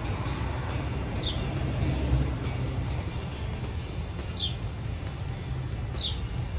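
Outdoor ambience: a bird gives short, falling chirps three times, about every three seconds, over a steady low rumble.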